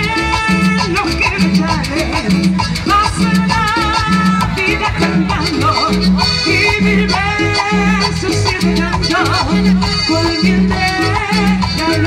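Live band playing upbeat Latin dance music through stage speakers: keyboards and percussion over a steady repeating bass line.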